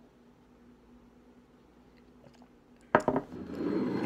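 A person drinking soda from a glass in a quiet room with a faint steady hum; about three seconds in, a sudden sharp knock, followed by a breathy voiced exhale.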